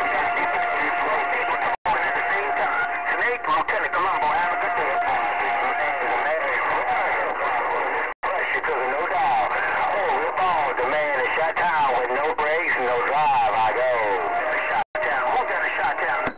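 Galaxy CB radio's speaker receiving skip traffic: several distant stations talking over one another, garbled and tinny, with a steady heterodyne whistle under the voices. The signal is strong enough to swing the meter past S9, and the audio cuts out for an instant three times as stations key and unkey.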